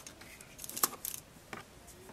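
Crushed wax crayon pieces being dropped into a cookie cutter: a few light, separate clicks and small rattles.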